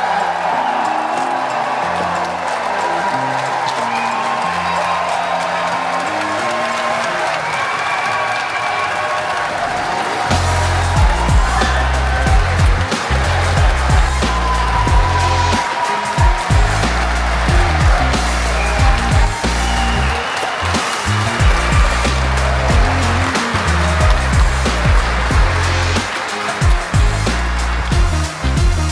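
Audience applauding while music plays; about ten seconds in, a heavy, pulsing bass beat comes in and the music grows louder.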